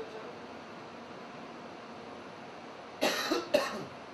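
A person coughs twice in quick succession about three seconds in, over a steady background hiss.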